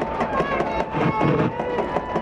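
Football stadium crowd noise from the stands, with long held notes of steady pitch over it that step to a new pitch about a second in.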